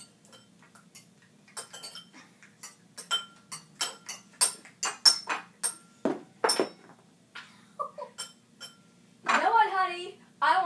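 Fork clinking against a bowl while eating: a long, irregular run of sharp, ringing clinks, two or three a second. A voice comes in near the end.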